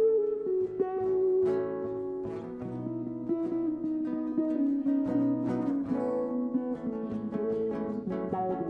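Live acoustic guitar instrumental passage: plucked notes ring over strummed chords, the lead line stepping slowly downward in pitch.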